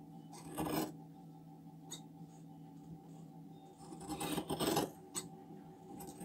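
Large tailor's shears cutting through folded layers of fabric: a short cutting stroke just after the start and a longer one about four seconds in, with a couple of light clicks of the blades.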